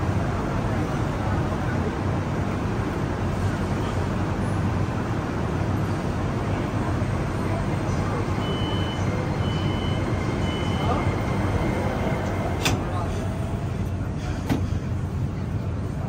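Beijing Subway Line 10 train's door-closing warning: three short high beeps about halfway through, then a sharp knock as the doors shut and a second knock a couple of seconds later. Under it runs a steady station hum with people's voices.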